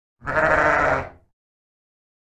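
A sheep bleating once, a single rough baa about a second long that starts a moment in and trails off.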